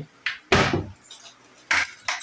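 Kitchen cupboard doors being opened and shut by hand, giving a loud knock about half a second in and another near the end, with a lighter tap just before the first.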